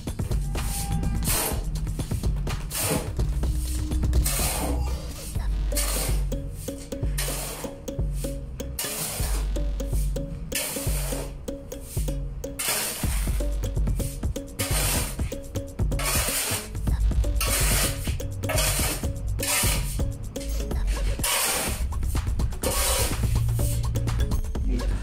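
Background music with a steady bass line, over a steel shovel scraping along a concrete floor again and again as a dry sand-and-cement mix is turned.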